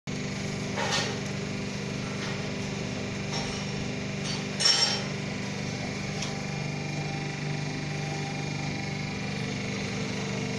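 Double-die paper plate making machine running with a steady motor hum while its dies press paper plates, the metal dies closing with sharp clanks, loudest about a second in and just before the five-second mark.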